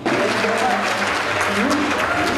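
Audience applauding, starting abruptly, with voices talking over the clapping.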